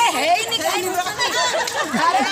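A group of women's voices talking and calling out over one another in lively chatter.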